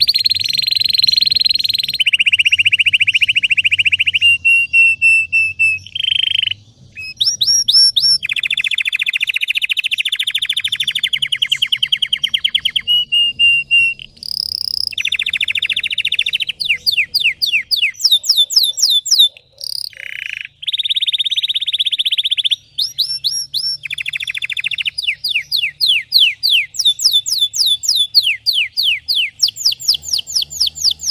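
Red-factor canary singing continuously, its song made of long fast trills alternating with runs of quick sweeping notes at about four a second, with a few brief pauses.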